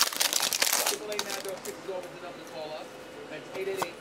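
Foil trading-card pack wrapper crinkling and tearing open, loudest in about the first second, then quieter rustling as the cards are pulled out.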